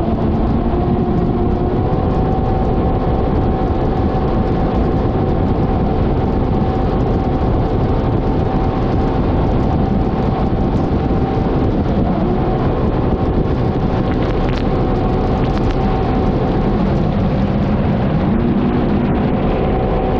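Yamaha WaveRunner VX Cruiser HO's 1.8-litre engine running at high throttle at about 100 km/h, with a dense rush of wind and water spray over it. The note holds steady and shifts slightly near the end.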